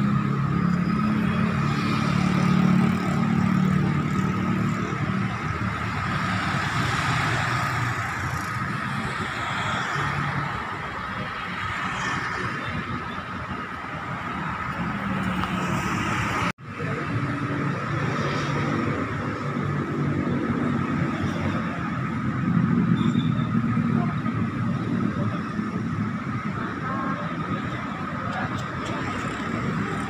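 Busy city road traffic at rush hour: a continuous mix of vehicle engines and tyres, with heavier engines passing close by near the start and again later. The sound drops out for an instant about halfway through.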